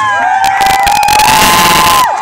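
Dance music playing with one long held sung note, while a crowd cheers loudly over it from about a quarter of the way in.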